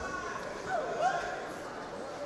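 Shouted speech from a voice at the cage, from about half a second in to past a second, over steady arena background noise.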